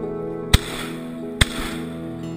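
Two shotgun shots just under a second apart, each a sharp crack with a short echo, heard over acoustic-guitar background music.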